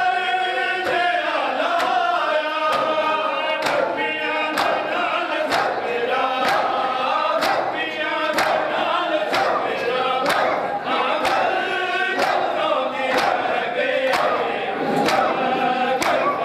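Matam: a group of men chanting a mourning nauha together while beating their chests with their open hands, the slaps landing in unison about once a second.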